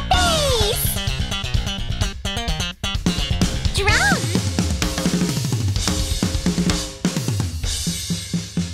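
Band music: a bass riff of quick notes plays, then about four seconds in a drum kit takes over with a run of drum and cymbal hits.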